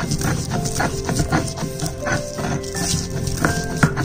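Stone muller scraping back and forth on a grooved grinding stone (sil batta), crushing fresh coriander and sesame seeds in repeated strokes. Background music with sustained notes runs underneath.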